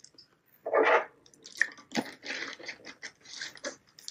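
A person drinking water from a plastic bottle, gulping and swallowing with small wet mouth clicks, to wash down a popcorn kernel stuck in the throat. The loudest swallow comes just under a second in.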